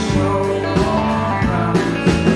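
Live country-rock band playing: a strummed acoustic guitar over a drum kit keeping a steady beat, with a man singing.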